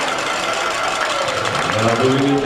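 Hall noise from a ballroom as the dance music ends: an even wash of crowd noise with a faint held note, and voices starting near the end.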